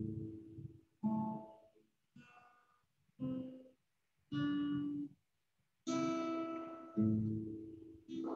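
Acoustic guitar played slowly, single notes and two-note chords plucked about once a second, each ringing briefly and decaying. Heard over a video call, so each note is cut off into dead silence before the next.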